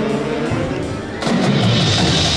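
High school marching band playing: a held brass and wind chord, then about a second in a sudden loud full-band entrance with heavy drum hits that carries on.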